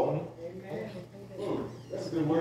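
Faint, brief murmured voice about a second and a half in, over a steady low electrical hum in a large room.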